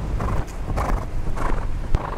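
A horse cantering on a sand arena: hoofbeats in a steady rhythm, roughly one stride every half second or so, with a sharp knock near the end.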